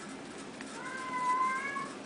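A single drawn-out animal cry, about a second long and rising slightly in pitch, over faint room noise.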